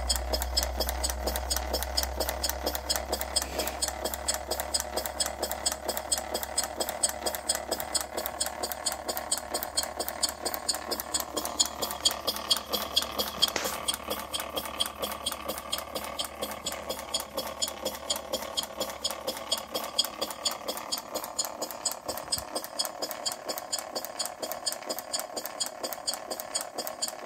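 Hand-built scale-model Corliss engine running slowly, its valve gear and moving parts making a steady, even ticking rhythm.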